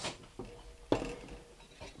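A metal toaster crumb tray being knocked out over a fireplace to shake off crumbs: a light click, then one sharper knock about a second in, and a softer tap near the end.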